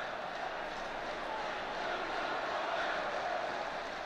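Steady background noise with no clear events, swelling slightly in the middle.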